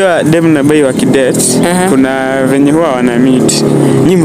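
People talking: continuous speech.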